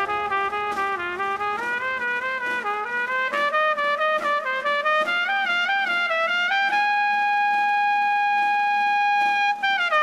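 Trumpets of a Holy Week agrupación musical playing one melody line without the low brass, climbing step by step and then holding a long high note for about three seconds. The full band, bass included, comes back in at the very end.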